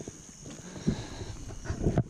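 Steady high chirring of crickets, with knocks and rustling of the camera and flashlight being handled, getting busier in the second second.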